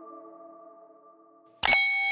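Sound effects of an animated subscribe end card. A ringing chime fades out, then about 1.6 s in comes a sharp click and a bright notification-bell ding that keeps ringing.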